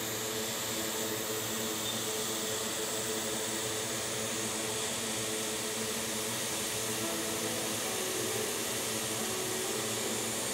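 Hot-air rework station blowing a steady rush of air with a faint hum underneath, heating flux and solder on a MacBook logic board to reflow small resistors.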